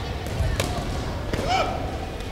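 Sharp knocks and short shouts from a sports chanbara bout on a wooden gym floor: two knocks about three-quarters of a second apart, each followed closely by a brief shout.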